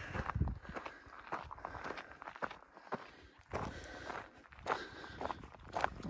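A hiker's footsteps crunching on a rocky, gravelly mountain trail, a series of irregular steps.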